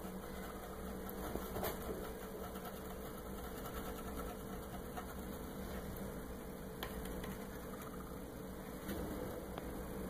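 A steady low mechanical hum with a faint held tone, broken by a few soft clicks.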